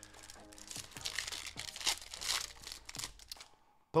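Foil wrapper of a Pokémon trading card booster pack being torn open and crinkled by hand: a run of crackling rustles for a couple of seconds that cuts off suddenly near the end.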